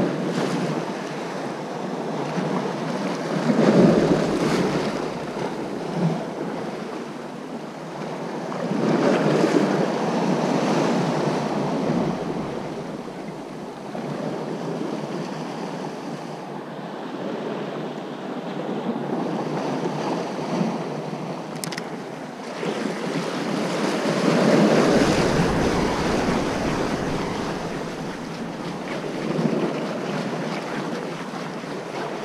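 Sea waves washing against the shore in slow swells, louder three times through, with wind buffeting the microphone.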